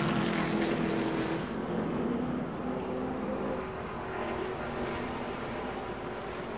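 NASCAR Cup cars' V8 engines running at low speed under caution, a steady drone with a few held engine tones that shift slightly in pitch.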